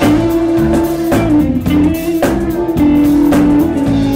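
A live band playing a soul song: drum kit keeping a steady beat of about two hits a second, guitar, and a loud held melody line stepping between a few notes.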